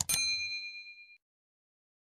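A short click, then at once a bright bell-like ding that rings for about a second and fades out: the notification-bell sound effect that goes with clicking a subscribe animation's bell icon.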